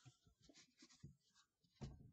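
Faint pen-on-paper writing: a quick run of short scratchy strokes, then a single soft knock near the end, the loudest sound.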